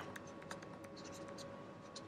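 Faint light taps and scratches of a stylus writing on a tablet, over a thin steady hum.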